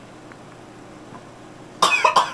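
Quiet room tone, then near the end a sudden, loud short burst of coughing, two quick coughs in a row.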